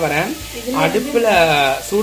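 Masala-stuffed brinjals and onion pieces sizzling as they fry in oil in a wok, stirred with a wooden spatula. A person's voice talks over the sizzle throughout.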